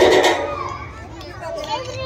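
Loud dance music for a stage performance fades out in the first half second, leaving a short gap filled with children's voices and chatter.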